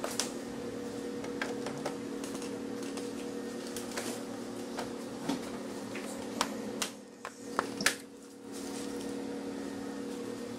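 Plastic clicks and snaps as a TV's bezel is pressed back onto the panel by hand, with a few sharper snaps in the second half, over a steady low hum.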